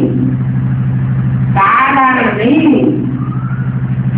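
A steady low mechanical hum with a fast, even pulse runs beneath everything, with a voice speaking briefly in the middle.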